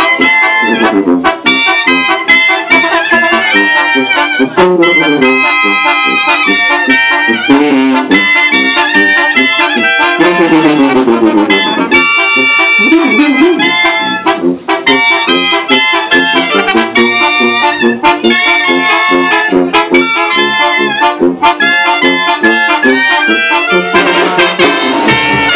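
Live Mexican brass band (banda) of trumpets, baritone horn and sousaphone playing a pasodoble with a steady beat. About ten seconds in, the low brass play a falling run.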